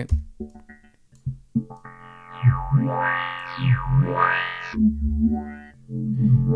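Synthesizer run fully wet through the Moog MF-105S MuRF filter-bank plugin, its LFO sweeping the resonant filter frequencies up and down in arcs. After a nearly quiet start, the sound swells in about two seconds in and drops to a lower held tone near the end.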